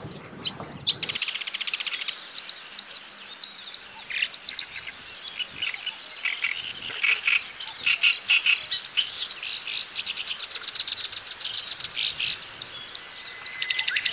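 Reed warbler (kerak basi) singing a fast, continuous song of quick repeated high slurred notes mixed with harsh, buzzy chattering phrases, starting about a second in.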